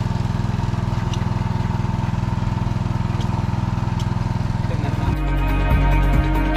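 A small engine running steadily with a low, even drone. Background music comes in about five seconds in.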